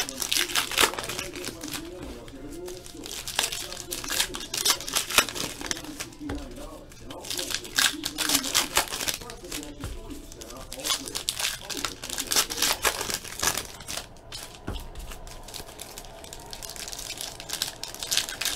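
Trading card packs of 2016 Classics Football being torn open by hand, the wrappers crinkling in quick, irregular crackles, with cards handled between packs.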